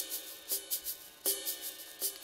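Crash and ride cymbals from a hip-hop drum track playing on their own: ride strokes in an even rhythm, with a crash ringing out twice.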